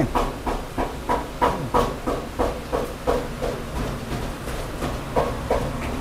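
A steady hiss with irregular light knocks and clicks, about two or three a second, typical of a busy taqueria.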